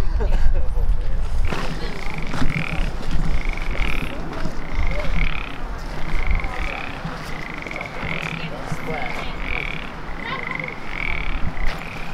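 Frogs calling in a steady run of short, high calls, about one or two a second.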